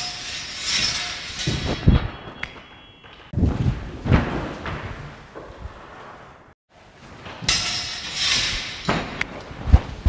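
Bodies grappling and being thrown down onto a wooden floor: scuffling of bare feet and clothing with several heavy thuds, the loudest about two seconds in and again near the end. A brief drop to silence a little past the middle breaks the sequence before the scuffling and thuds start again.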